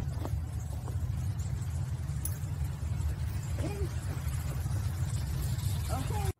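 Steady low outdoor rumble, with a few faint short chirps about three and a half seconds in.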